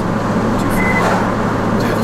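Steady road and engine noise inside a moving car's cabin, with a constant low hum.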